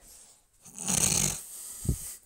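A rough, snore-like breath drawn in, about half a second long, about a second in, followed by a short low sound near the end.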